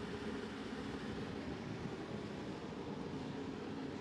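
Home-made waste-oil burner burning hard: a steady, even rushing noise with a faint low hum underneath.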